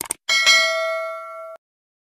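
Subscribe-animation sound effect: two quick clicks as the cursor hits the notification bell icon, then a bright bell ding that rings for about a second and cuts off suddenly.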